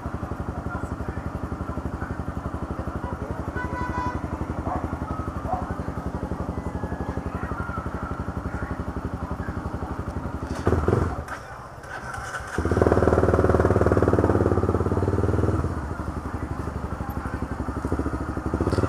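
Honda CB300's single-cylinder engine idling with a steady pulsing beat. About eleven seconds in it drops away briefly, then runs louder for about three seconds as the bike pulls forward, before settling back to idle.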